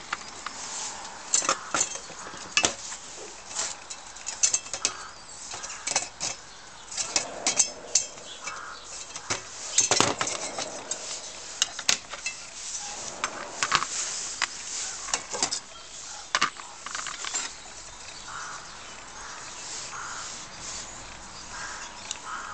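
Brass Optimus 415 paraffin blowtorch being taken apart by hand: many short metallic clinks, taps and scrapes as its burner parts and tools knock against each other and the metal-topped bench, the loudest about ten and twelve seconds in.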